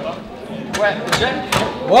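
Sharp knocks of play on a table-football table, the ball and figures striking, three in quick succession in the middle, among men's voices.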